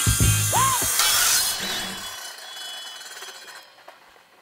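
A power saw cutting, a loud hissing, high-pitched sound that fades away over about three seconds, laid over the last bars of a funky guitar music track that stop about two seconds in.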